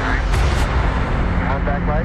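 Dense film-trailer soundtrack: a deep rumble under a pulsing beat, with brief voices near the end.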